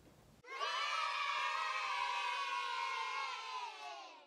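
A crowd of children cheering and shouting together. It starts about half a second in and fades out near the end.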